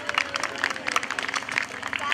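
Audience applauding, with distinct, scattered hand claps rather than a dense roar.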